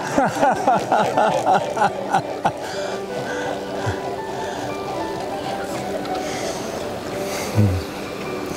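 Swans taking off and flying low over the river, their wings beating in a quick rhythmic throb that is strongest for the first two and a half seconds and then fades. A short low voice sound comes near the end.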